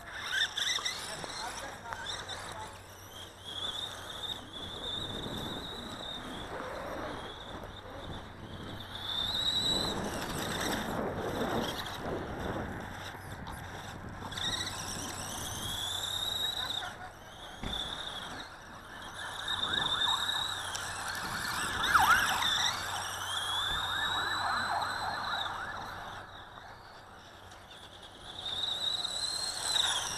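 Dromida DB4.18 1/18-scale electric RC buggy driving on dirt and gravel: a weird high-pitched squeal that rises and falls with the throttle, over gravel crunching under the tyres. The crunching is loudest about two-thirds of the way through.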